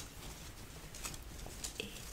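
Faint rustling of a dress's fabric handled close to the microphone as it is turned right side out and shaken into place, with a couple of light clicks.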